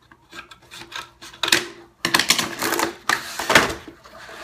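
Scissors snipping cardboard packaging in a series of sharp clicks. About halfway through, louder rustling and scraping of cardboard and plastic takes over as the blaster parts are worked free of the tray.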